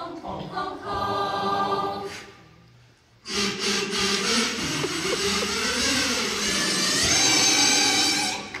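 Large high school choir singing: a held chord fades out about two seconds in, there is a brief near-silent pause, then the full choir comes back in loudly just after three seconds and holds a long chord, with voices sliding up and back down in pitch midway.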